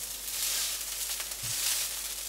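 Dosa batter sizzling in a hot non-stick frying pan as the dosa crisps: a steady, high hiss.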